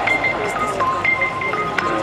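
Music: a simple melody of held notes stepping down and then back up in pitch, over a dense background.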